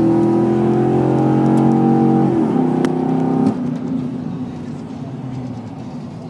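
A car engine at full throttle, held at high revs, its pitch dropping about two seconds in as it passes, then fading away over the last few seconds.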